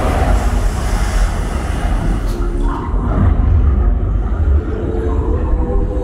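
Deep rumbling and rushing noise from the show effects of Mickey & Minnie's Runaway Railway during its waterfall plunge into an underwater scene. The rushing hiss fades about halfway, leaving the low rumble and faint tones from the ride's soundtrack.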